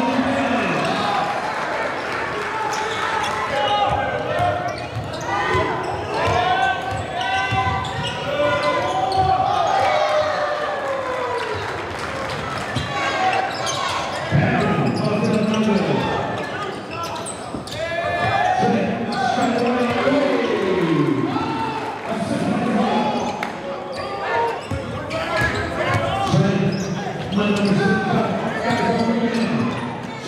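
Live basketball game sound in a gym: the ball bouncing on the hardwood court amid shouting voices of players and spectators, echoing through the large hall.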